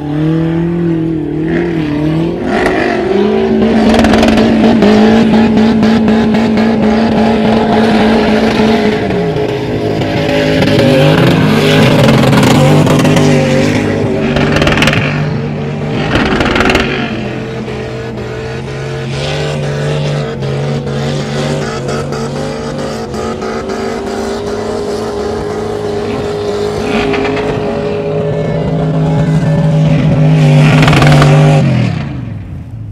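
Off-road 4x4 engines revving hard while driving and spinning on loose sand. The pitch holds high, then falls and rises again with the throttle.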